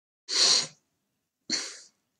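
A man sneezing twice, two short sharp bursts about a second apart, the first the louder.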